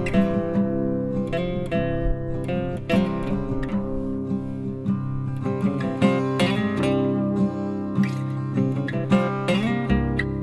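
Acoustic guitar music: an archtop guitar picking a melody of plucked notes over strummed chords, with a steady low drone held underneath.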